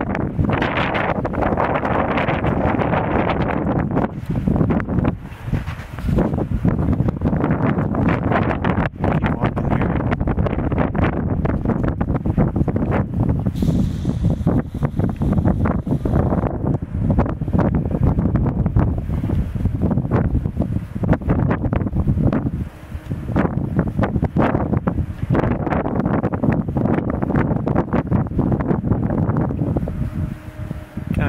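Wind buffeting the camera microphone: a loud, gusting rumble that dips briefly now and then.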